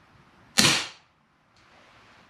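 Crosman 1875 Remington CO2 revolver firing a single BB shot about half a second in: a sharp pop that dies away with a short echo in the garage. It is the sixth and last shot of the cylinder.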